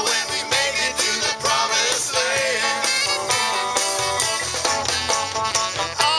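Live band playing an upbeat song: electric bass, electric guitars, saxophone, congas and drum kit over a steady beat.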